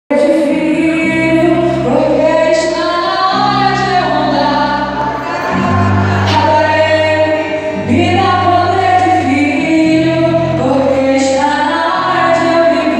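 Live gospel worship music in a large hall: a woman singing over a band of keyboard, electric guitars and drums, the bass holding long notes that change every second or two.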